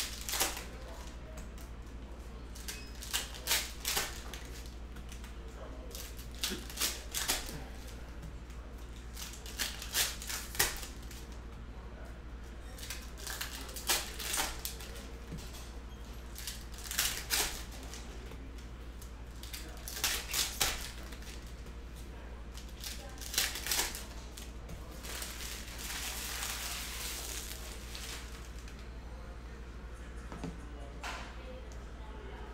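Trading cards being flipped through and sorted by hand, their edges snapping in quick clusters of clicks every second or two, with a longer, softer rustle near the end, over a steady low hum.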